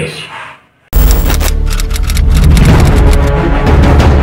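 The tail of a man's speech fades to a brief pause, then the news channel's theme music cuts in suddenly about a second in, loud, with a strong bass and a steady pulse.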